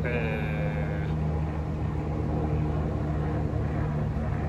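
Dry-erase marker writing on a whiteboard, with a short squeak in the first second, over a steady low mechanical hum like an idling engine.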